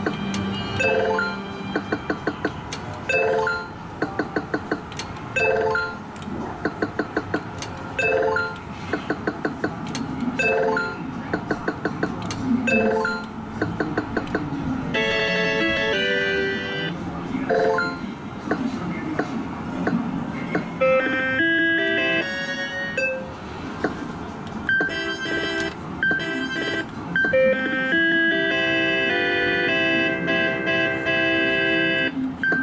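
Electronic sound effects of a Sigma Joker Panic! video poker medal machine. For the first half a short chime followed by rapid ticking repeats about once a second as cards are dealt. From about halfway a more melodic jingle takes over, and it grows fuller near the end as the Hi-Lo Double bonus game comes up.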